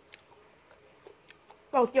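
Quiet chewing with a few faint, short mouth clicks, then a woman starts talking near the end.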